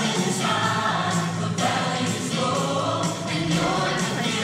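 Mixed-voice choir singing together over rock backing music with a steady beat.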